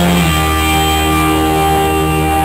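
Live punk rock band: electric guitar and bass hold one sustained chord and let it ring, after a quick chord change just after the start.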